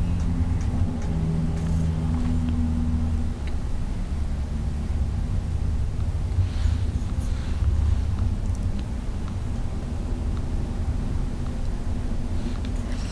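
A steady low rumble, with a few faint ticks over it.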